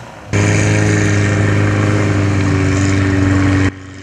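Off-road 4x4's engine running hard at steady high revs as it churns through deep mud, the note held without rising or falling. It cuts in about a third of a second in and cuts off suddenly just before the end.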